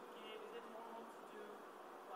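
A woman's voice asking a question from the audience, faint and distant, picked up only by the stage microphones so it sounds thin and buzzy.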